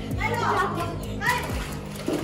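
Children's voices shouting and squealing, two short high-pitched outbursts, over background music.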